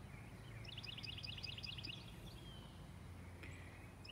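Faint outdoor ambience with a bird giving a quick run of short, high chirps about a second in, lasting about a second.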